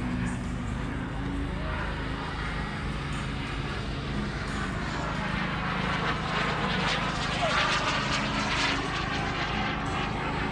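Model jet turbine engine running somewhere on the field, its rushing whine growing louder for a few seconds near the end, over a steady low hum.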